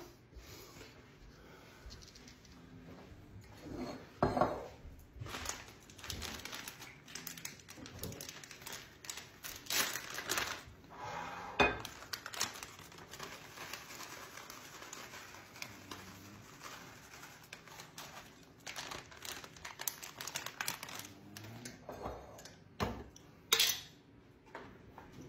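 Kitchen handling sounds: irregular clinks and knocks of dishes and utensils, with the crinkle of a plastic bag of shredded cheese being cut open and handled. The sharpest knocks come about 4 s in, around 10 to 12 s, and just before the end.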